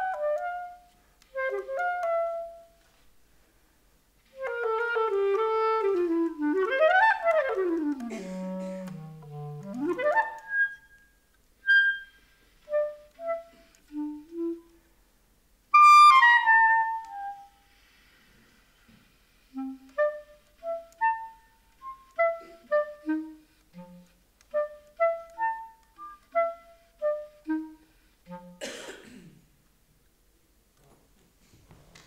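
Solo clarinet playing an unaccompanied piece in phrases separated by pauses. A long run sweeps down into the low register and straight back up in the first half, followed by short separate notes with one loud high note about halfway. A short burst of noise comes near the end.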